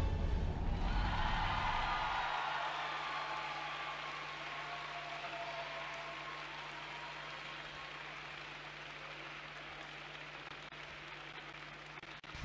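Arena audience applauding at the end of a figure-skating program, the last note of the music dying away in the first second. The applause slowly fades over the following seconds.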